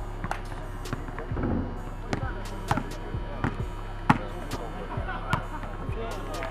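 Basketballs bouncing on a hard outdoor court: irregular sharp thuds, the loudest about four seconds in, over a steady low hum.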